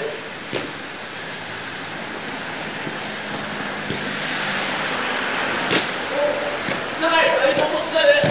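A futsal ball kicked three times, sharp knocks about half a second, four and nearly six seconds in, over a steady hiss, with players shouting from about six seconds on.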